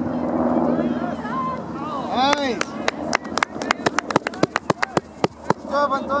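Sideline spectators shouting and cheering at a soccer match. From about two and a half seconds in until near the end there is a quick run of sharp hand claps close by.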